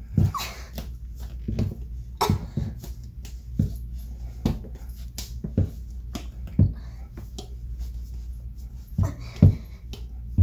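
Irregular thumps and scuffs from kicking legs in canvas sneakers, about ten knocks, with a lull of a couple of seconds near the end.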